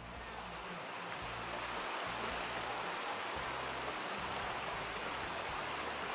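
Shallow, boulder-strewn mountain river rushing over rocks: a steady rushing that swells up over the first second and then holds even.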